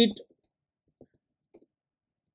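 The end of a spoken word, then faint single clicks at a computer: one about a second in and a quick double click about half a second later.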